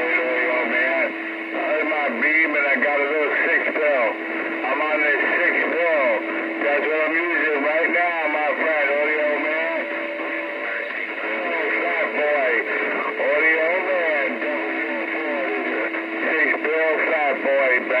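Garbled voices of distant stations coming over a Stryker SR-955HP radio's speaker, thin and narrow-sounding, with a steady low tone running underneath most of the time.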